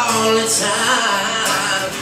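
Live country music: acoustic guitars strumming with a male voice singing over them.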